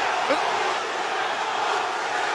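Large arena crowd cheering, a steady even din, with one word from a commentator just after the start.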